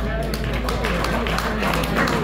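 Scattered audience clapping mixed with people talking at the end of a song.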